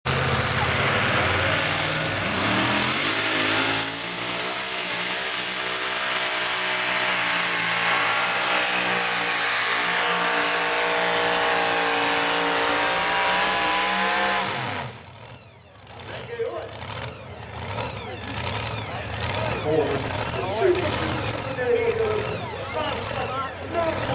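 Two-wheel-drive pulling truck's engine at full throttle hauling the sled, its pitch climbing steadily for about fourteen seconds, then cut off suddenly at the end of the pull. Voices follow.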